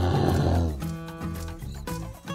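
A bear's growl sound effect, lasting under a second at the start, over light background music.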